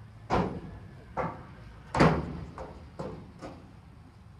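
A series of about six sharp bangs or knocks, irregularly spaced, each with a short echo; the loudest comes about two seconds in.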